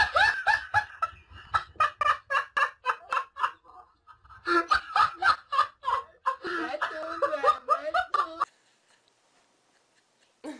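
A person laughing hard in rapid, rhythmic bursts, with a short break near the middle; the laughter stops about eight and a half seconds in.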